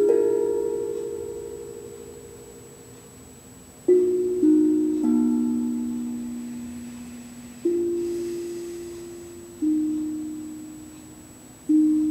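Steel tongue drum struck with a mallet, playing slow, sparse single notes that ring out and fade away, with a quick run of three notes about four seconds in.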